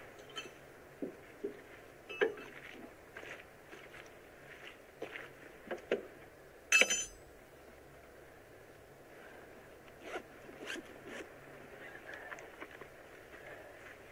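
Scattered rustles and light steps on the forest floor, then a single sharp metallic clunk with a brief ring about seven seconds in: the latch of a car boot lid being opened.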